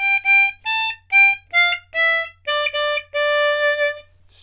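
C diatonic harmonica playing clean single notes in a slow falling phrase: 6 blow twice, 6 draw, 6 blow, 5 draw, 5 blow, then 4 draw three times, the last one held for about a second.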